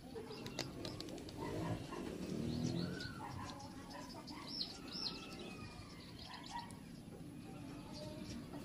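Faint background of birds chirping, with two short high chirps about halfway through and a low murmur about two to three seconds in.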